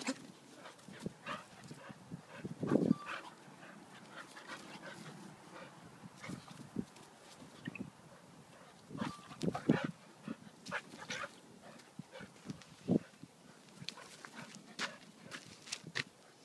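Two dogs playing rough, making scattered short dog sounds. The loudest come about three seconds in, then again around ten seconds in and once more near thirteen seconds.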